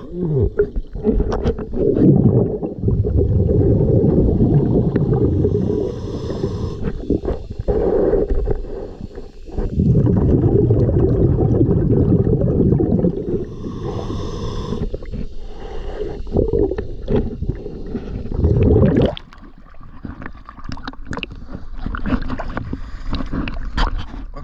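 Scuba diver's breathing heard underwater: exhaled bubbles rumbling past the camera in long bursts of several seconds, with a short regulator hiss at each inhalation between them. About 19 s in the rumbling stops and only lighter splashing and water sounds remain as the diver breaks the surface.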